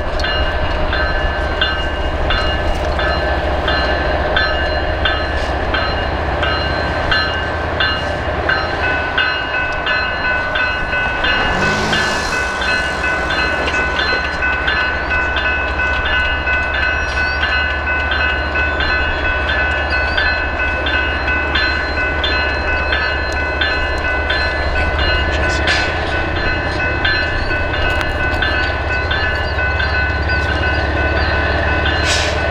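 BNSF diesel freight locomotives rumbling as the train slowly gets under way, with a bell ringing steadily over them. A brief hiss is heard about twelve seconds in.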